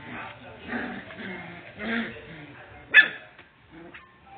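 Puppies play-fighting, giving short yips and barks, with one sharp, loud yip about three seconds in.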